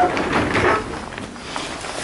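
Irregular knocking and rustling as a person moves across the wooden floor of a box truck's cargo area among cardboard boxes, loudest in the first second.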